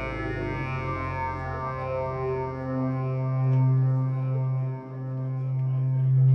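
Live electronic music: a sustained synthesizer drone with a strong low note and layered overtones that waver up and down. It swells louder about halfway through and dips briefly near the end.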